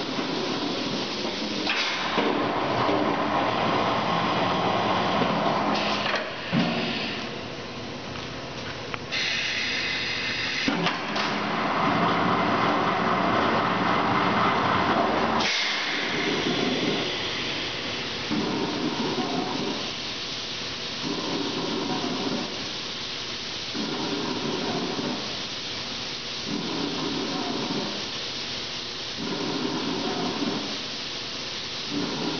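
Richmond barrel dedenter running through its cycle: compressed air hissing loudly, changing several times and cutting off sharply about halfway through, then the machine running more quietly with a low pulse about every two seconds.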